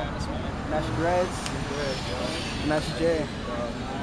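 Street ambience: voices speaking indistinctly in short bursts over the steady low rumble of passing traffic.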